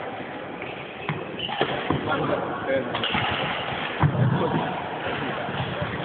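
Voices talking in the background, with several short sharp knocks scattered through.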